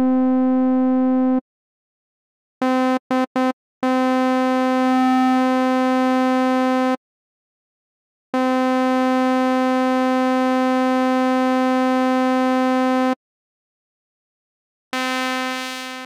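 Reason's Malstrom software synthesizer playing a bright, buzzy square-wave tone, all on one pitch. A held note stops about a second and a half in, three quick taps follow, then longer held notes of about three and five seconds, and another begins near the end. It is a single raw oscillator being tuned by ear as the first step toward imitating a shehnai.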